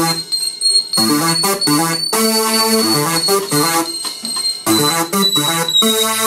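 Live electronic music: a synthesizer keyboard playing changing chords over a steady drum beat, with a high held synth tone running through it.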